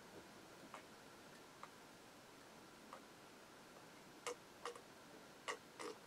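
Faint swallowing gulps as a man chugs beer from a glass mug. A few soft clicks come in the first three seconds, then four sharper gulps in the last two seconds.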